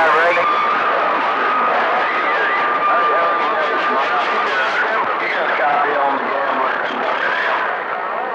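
CB radio receiver audio: weak, garbled voices that cannot be made out, under static, with a steady whistle from about half a second in until past four seconds, the kind a second carrier on the channel makes.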